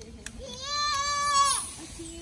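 A high-pitched, steady call about a second long that drops in pitch as it breaks off.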